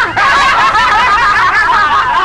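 Several people laughing loudly together, their voices overlapping.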